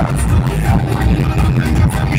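Loud music with a heavy bass beat.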